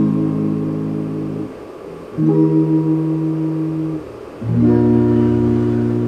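Electric guitar playing three full chords, each struck once and let ring for about one and a half to two seconds, with short gaps between them. They are held whole-note chords from a C minor, A-flat, E-flat major, B-flat progression.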